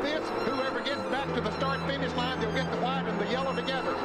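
Mostly speech: a voice talking over a steady low hum, with some background music.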